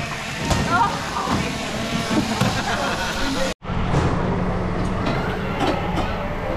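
Shearing-shed din: electric sheep-shearing machines running steadily under background voices. The sound drops out abruptly about three and a half seconds in, then resumes with a steady hum.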